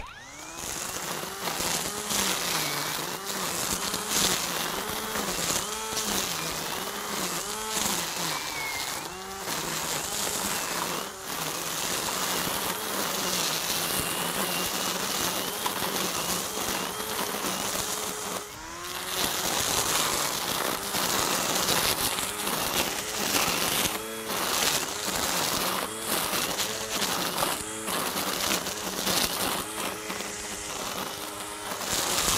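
SKIL 40V brushless string trimmer running and cutting through thick, tall grass: a steady buzzing whine whose pitch sags and recovers about once a second as the line meets the grass. The whine briefly eases off about two-thirds of the way through.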